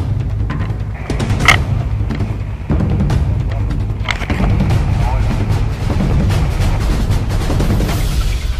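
Background music with a heavy, pulsing low beat, with a few sharp clicks over it, the loudest about one and a half seconds in.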